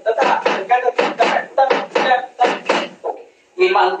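A man counting a three-beat pulse aloud in short, even syllables, about three a second, keeping time for a foot ostinato in a llanero rhythm; it breaks off shortly before the end.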